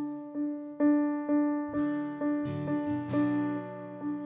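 Stage keyboard with an electric-piano sound, striking the same note about twice a second over changing lower notes. There is a brief brighter, busier passage a little past the middle.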